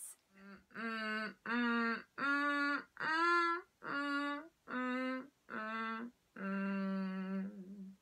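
A woman humming with a creak behind the hum, in short separate notes up and down a minor pentatonic scale, the last note held longer. This is a cord-closure exercise: the creak brings the vocal cords tightly together.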